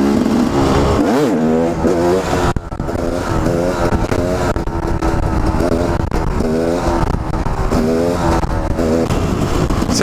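Single-cylinder engine of a Husaberg 250 two-stroke supermoto being ridden, its pitch rising and falling repeatedly as the throttle is worked, with a brief drop about two and a half seconds in. Low wind rumble on the helmet-mounted camera's microphone runs under it.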